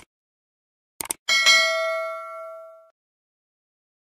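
Subscribe-button sound effect: a click at the start, a quick double click about a second in, then a bright notification-bell ding that rings for about a second and a half and fades away.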